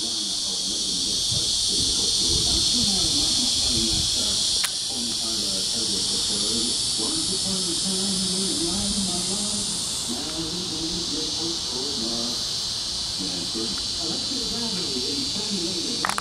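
A steady, high-pitched drone of cicadas, with a faint murmur of distant voices underneath and a single click about four and a half seconds in.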